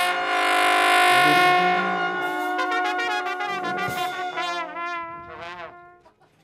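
Brass ensemble of trumpets, trombones and a low upright brass horn playing a loud held chord, then a fast, wavering solo line over softer backing that fades out near the end.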